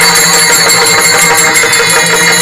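Kirtan accompaniment music without singing: steady held tones under a fast, even ringing of small hand cymbals (taal).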